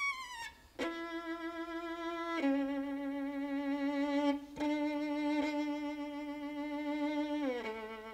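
Solo violin playing slow, long-held notes with vibrato. It starts with a falling slide and a brief pause, then holds a sustained note, steps down to a lower note held for several seconds across a few bow changes, and slides down again near the end.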